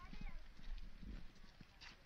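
Footsteps on a packed-earth path, a few soft steps under a second apart, with faint voices.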